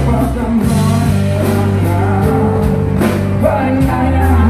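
Live rock band playing a song: a male vocalist singing over strummed acoustic guitar and bass guitar, with a steady beat.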